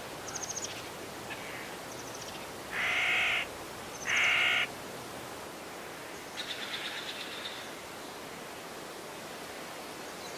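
Two loud, harsh bird calls about a second apart, with fainter quick chirps before and after them, over a steady background hiss.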